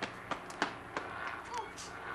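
A handful of short, sharp knocks and clicks in quick succession over the first second, then a brief 'oh' from a voice.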